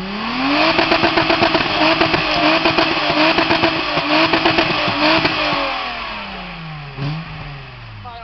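Car engine revved hard through a twin-tip exhaust while standing still: the pitch climbs, is held at the top with a rapid stutter for about four to five seconds, then falls back toward idle.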